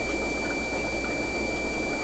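Steady fish-room background: a low hum and hiss from air-driven aquarium sponge filters and their air pump, with a faint, constant high-pitched whine over it.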